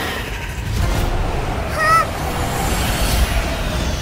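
Animated-film sound effects: a low rumble, with a short, wavering honk-like creature call about two seconds in, as the Nian beast arrives.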